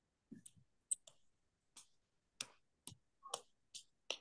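Faint, scattered clicks, about ten of them at uneven intervals, with near silence between.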